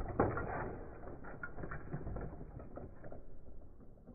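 Akedo toy battle figures' plastic punching mechanisms and controllers clicking and rattling rapidly as the figures trade blows. The rattle is densest at the start and thins out after about three seconds.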